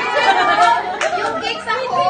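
A group of women talking over one another, several voices at once.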